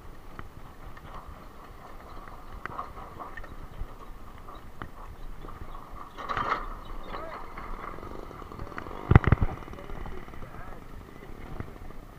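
Open-air market bustle heard while riding a bicycle over a dirt track: background voices, scattered light clicks and rattles, and the hooves of a horse pulling a cart. A louder burst of sound comes about six seconds in, and two heavy thumps hit the microphone about nine seconds in.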